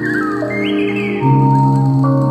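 Instrumental hip-hop beat: held chords under a high, sliding melody, with a deep bass note coming in just past halfway as the music gets louder.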